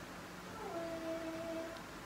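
A single drawn-out, pitched cry that rises briefly and then holds one steady note for about a second, starting a little after half a second in.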